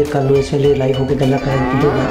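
A man's low voice drawn out in long held tones. Near the end a swirling sweep sound comes in.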